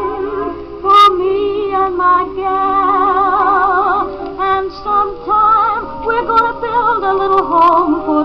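A 1951 Sears Silvertone record player playing a record through its small built-in speaker: vocal singing with orchestra, with vibrato on the held notes and the highs cut off, as on an old recording.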